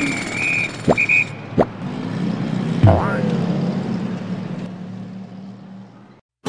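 Logo-sting sound effects: a steady high tone broken by two sharp clicks in the first second and a half, a sweeping hit about three seconds in, then a low hum that fades out.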